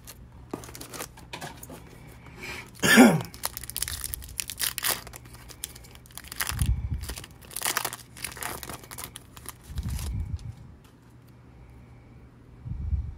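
Foil wrapper of a trading-card pack being torn open and crinkled, with a run of sharp crackles as the pack is ripped and the cards are pulled out. A short vocal sound falling in pitch about three seconds in is the loudest moment, and a couple of dull handling bumps come later.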